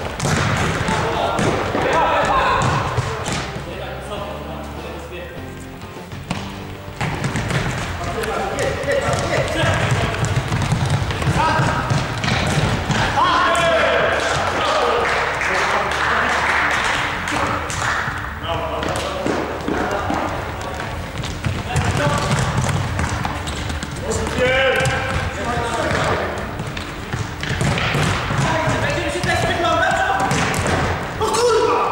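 Futsal ball being kicked and bouncing on a sports-hall floor, with players' voices calling out across the court, all echoing in the large hall.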